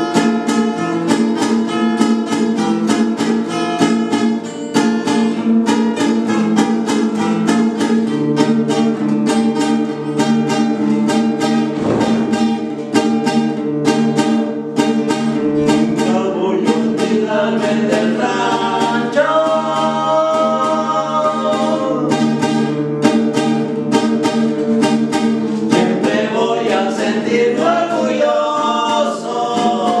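Two acoustic guitars strumming a steady corrido rhythm. Two men's voices come in singing together a little past halfway, pause briefly, then sing again near the end.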